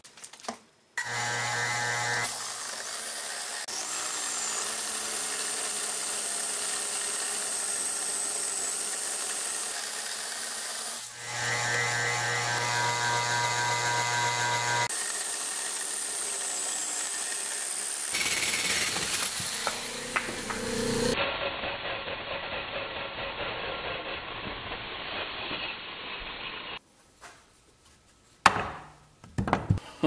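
Wood lathe spinning a wooden blank while a hole saw bites into it to cut a rough sphere, a loud steady cutting noise with a motor hum in places. The noise changes abruptly several times, then stops, and a few knocks follow near the end.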